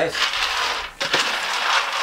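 Raw peanuts being stirred with a wooden spoon in a metal oven tray as they roast: a dry rattling and scraping of the nuts against the metal, with a brief pause about a second in.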